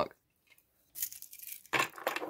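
Hands rummaging in a model horse stable among thin wooden partitions and wood-shaving bedding: a short rustle about halfway through, then a louder scrape near the end.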